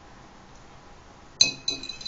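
A metal fork striking a dark glass plate twice, a little after halfway, each clink ringing briefly.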